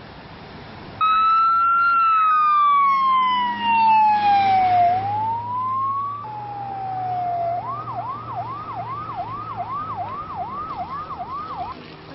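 Emergency vehicle siren, starting suddenly about a second in. It begins as a slow wail whose pitch falls and then rises again, breaks off near the middle, and switches to a fast yelp of repeated rising sweeps, about two and a half a second.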